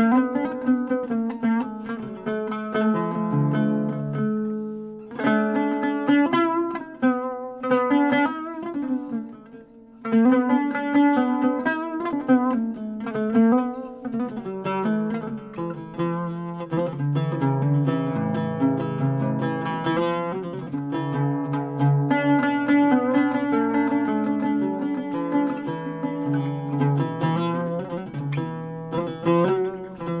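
Solo oud being played: a melody of plucked notes that fades to a brief pause about ten seconds in, then picks up again.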